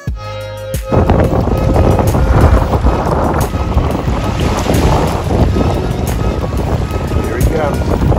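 Wind buffeting the microphone and water rushing past a boat under way at speed, cutting in abruptly about a second in over music that keeps playing faintly underneath.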